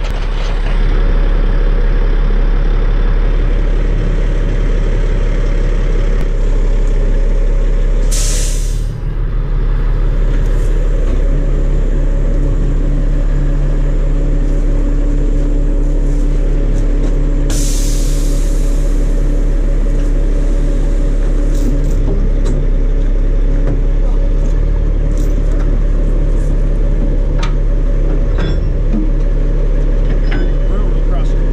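A semi truck's diesel engine idling steadily, with two short bursts of air hiss from the truck's air brake system, about eight seconds in and again near seventeen seconds.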